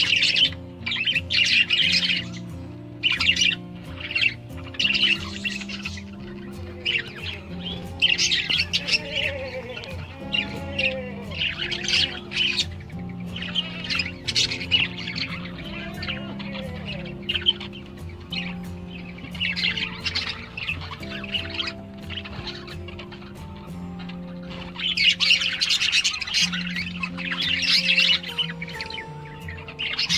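Budgerigars chattering and chirping in repeated short flurries, busiest near the end, over background music with steady held low notes.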